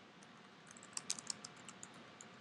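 Computer keyboard typing, faint: a quick run of keystrokes in the second half.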